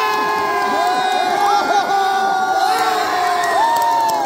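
Crowd of spectators cheering and shouting loudly, many voices overlapping in long held yells, as a tug-of-war pull ends with one team winning.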